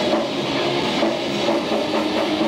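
Live metal band playing loud: distorted electric guitars and bass over drums, a dense unbroken wall of sound.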